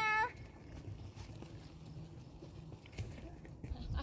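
A high, drawn-out call with a steady pitch breaks off just after the start. Then comes a low, steady wind rumble on the microphone, with faint rustling and a few soft thuds near the end.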